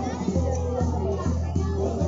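Dance music with a heavy, steady beat, a little over two beats a second, with children's voices over it.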